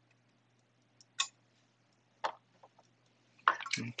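A few isolated sharp clicks, two of them about a second apart, followed by a couple of faint taps: small hard parts being handled and set down. A man starts speaking near the end.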